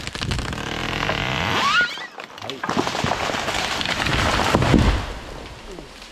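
A felled redwood going over: cracking and crashing through the surrounding small trees and brush, building to its loudest as it hits the ground about five seconds in, then tailing off.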